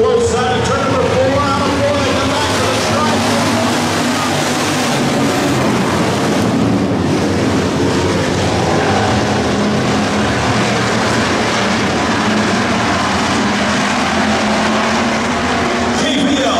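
A field of hobby stock race cars racing together on a dirt oval, their engines a loud, dense, steady drone as the pack goes through the turns.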